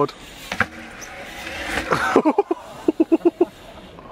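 A man laughing, with a short exclamation about two seconds in and a run of quick laughs soon after. Between them, a rising hiss of BMX tyres rolling over concrete.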